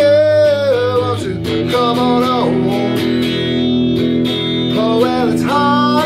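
A man singing held, bending notes without clear words over a strummed electric guitar.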